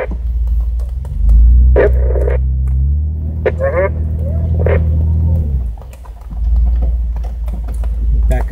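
Jeep engine pulling at crawling speed off-road, a low steady drone that swells about a second in, dips briefly around six seconds and picks up again, heard from inside the cab, with scattered knocks over it.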